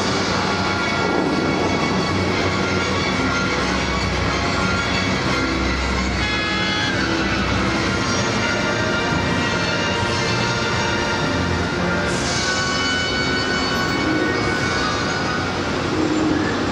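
Music played for the Bellagio fountain show, with long held notes, over a steady rushing noise from the fountain's water jets.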